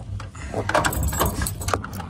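A bunch of keys jangling and clicking at a door lock as a key is worked in it: a quick run of sharp metallic clicks and rattles over a low rumble.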